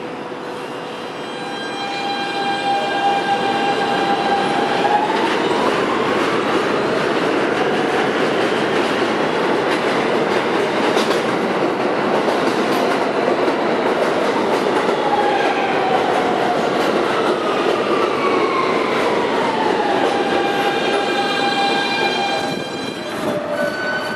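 R160B subway train pulling into an elevated station: its wheels rumble loudly on the rails as it rolls along the platform, under a steady electric motor whine. The whine slides up in pitch and then back down as the train brakes to a stop, settling into a steady tone near the end.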